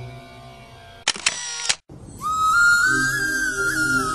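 Music fades out, then about a second in a camera shutter clicks, a short burst of clicks lasting under a second. After a brief silence, a new piece of music begins at about two seconds, led by a high melody line over a low accompaniment.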